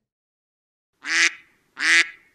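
A duck quacking twice, a loud nasal quack about a second in and another about three-quarters of a second later, as a quack sound effect.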